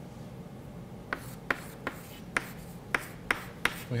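Chalk striking and scratching on a blackboard as letters are written: a run of short sharp taps, two or three a second, starting about a second in, over a low steady room hum.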